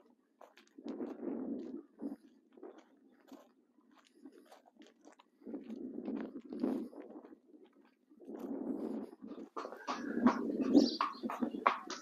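Faint crunching steps of a horse's hooves and a person's feet walking on gravel, coming in uneven patches and getting louder near the end.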